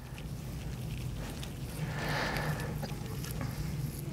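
Steady low room hum with faint rustling and small ticks of gloved hands handling fur while a hypodermic needle is twisted into the tibia.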